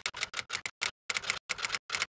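Typing sound effect: a quick, uneven run of sharp key clicks, about five a second.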